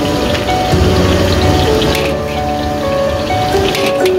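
Background music with held notes over fried rice sizzling in a large steel wok, with a couple of brief scrapes of the metal spatula against the pan.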